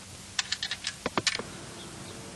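A payphone being worked by hand: a quick run of about eight sharp clicks and taps in about a second, a couple of them heavier.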